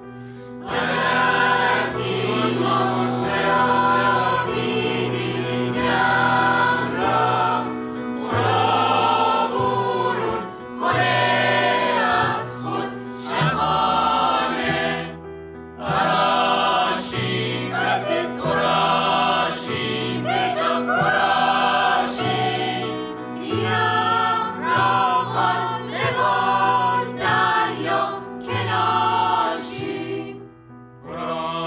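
Mixed choir of men and women singing a Caspian Coast folk song arrangement in phrases a second or two long with brief breaks between them, over instrumental accompaniment holding steady low notes.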